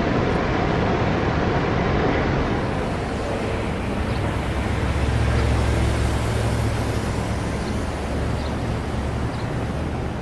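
A motor vehicle's engine running close by, a steady low rumble that swells from about four seconds in and fades about eight seconds in, over a constant outdoor rushing noise of street traffic.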